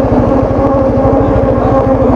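Engine of the vehicle carrying the camera running at a steady cruising speed: a rapid, even low pulsing with a steady hum above it.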